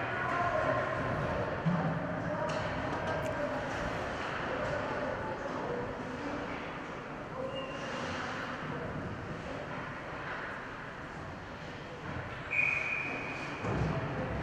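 Ice hockey rink ambience: faint, echoing murmur of distant voices in a large arena. A brief steady high tone sounds near the end.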